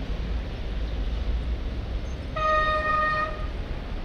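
A horn sounds one steady note for about a second, a little past the middle, over a steady low rumble of street traffic.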